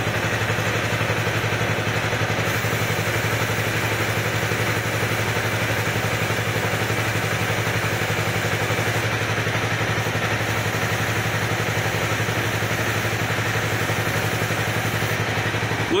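A Honda CBR250R's single-cylinder engine runs steadily at idle, turning the rear wheel and chain, under a continuous hiss of aerosol spray aimed at the chain and rear sprocket.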